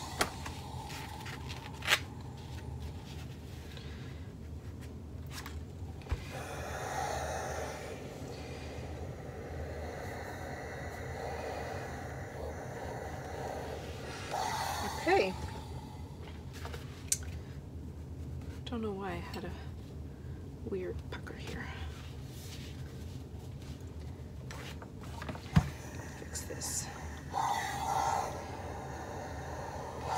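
Quiet fabric-pressing sounds: a steam iron sliding over cotton on a pressing board and fabric pieces being shifted and rustled, with a few sharp knocks spread through, over a steady low hum.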